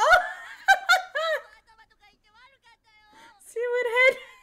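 A woman laughing in a few short bursts over the first second and a half, with quieter voices between and another voiced burst near the end.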